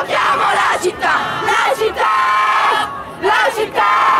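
A crowd of young protesters chanting and shouting slogans together, many voices at once in loud phrases broken by brief pauses.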